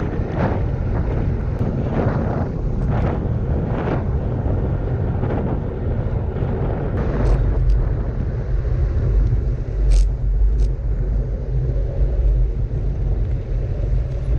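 Wind buffeting the microphone of a handlebar-mounted action camera on a gravel bike, over a low rumble of tyres and frame vibration. The rumble grows heavier about halfway through as the bike rolls onto paving slabs and rough ground. A few sharp ticks come in the second half.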